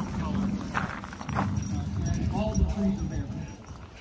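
Dogs playing and scuffling on gravel, with two short sharp scuffs in the first second and a half, over a steady low rumble and faint voices.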